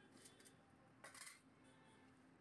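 Faint, brief scrapes of steel utensils being handled on a stall counter: a short one near the start and a slightly longer one about a second in, over near silence.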